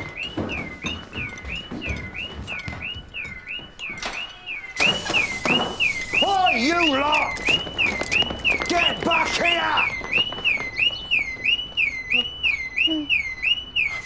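Car alarm sounding: a high electronic tone that swoops down and back up, repeating about twice a second without a break. About five seconds in, a short rush of noise and a few brief pitched sounds cut in over it.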